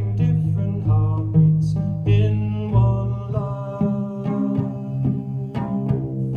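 Cello music: plucked notes over long, sustained low cello notes, in an instrumental passage of a slow song.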